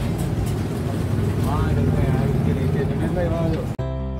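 Steady low engine rumble with snatches of voices, cut off suddenly near the end by soft music with held notes.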